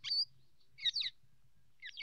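Bird chirping: three short, high chirps about a second apart, each falling quickly in pitch.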